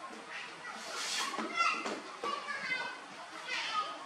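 Baby macaque giving a series of short, high-pitched squeaky calls.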